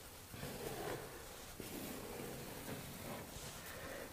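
Faint rustling and scraping of hands and a tool working texture into the paint on a ceiling cornice, with a light click about one and a half seconds in.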